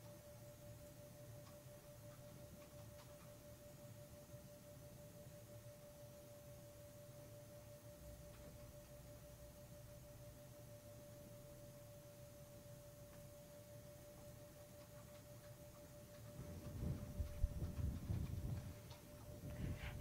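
A faint, steady single tone, like an electronic whine, over low background hum. About three seconds before the end there is a short stretch of louder low rumbling and bumps.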